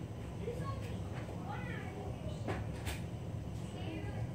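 Faint voices over a low steady hum, with two sharp clicks or knocks close together about halfway through.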